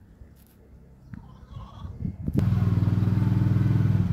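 A small petrol engine starts suddenly about two seconds in and runs on at a steady speed.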